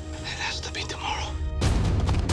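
Hushed whispering over a low, steady music drone. About one and a half seconds in, a sudden loud low boom cuts in.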